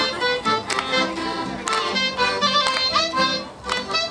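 Live accordion with a violin playing an old-time Berlin dance tune, the melody moving in quick notes over a steady beat.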